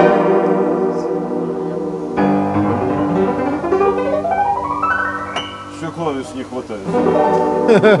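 Upright piano being played, chords and melody, with a quick rising run up the keyboard about halfway through.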